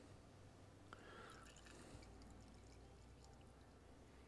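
Near silence: faint stirring of mixed automotive paint in a plastic mixing cup with a paint stick, with one light tick about a second in.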